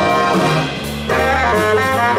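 Jazz big band playing live, with its horns to the fore. The band thins out briefly a little over half a second in, then the full ensemble comes back in at about one second.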